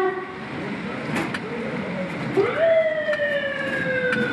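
A vehicle siren wailing. Its slowly falling tone fades out just after the start; about two and a half seconds in it sweeps quickly up and begins falling slowly again. There is a low hum of road noise from a moving car underneath.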